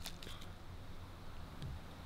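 Faint rustling and a few light ticks from a foil toy pouch being handled and opened, over a quiet background.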